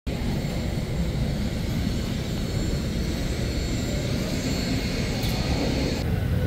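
Steady jet airliner noise: a low rumble with a fainter hiss above it, unchanging throughout.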